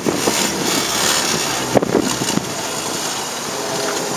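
Wind buffeting the microphone: a steady rushing noise, with a few light knocks and one sharper knock just under two seconds in.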